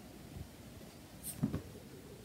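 Faint scuffs and rubbing of a kitten playing with a fabric ribbon wand toy on a hard floor, with a brief cluster of soft taps about one and a half seconds in.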